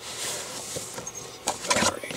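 Cardboard trading-card box and its packaging being opened and handled: a steady rustling scrape, then a few short knocks and rubs near the end.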